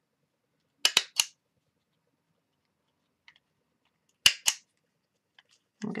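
Tiny Attacher handheld mini stapler snapping shut to staple a two-layer canvas heart closed. A quick run of three clicks comes about a second in, then a louder double click a little past four seconds.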